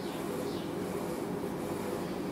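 Steady background room noise between sentences, an even low hum with no distinct events.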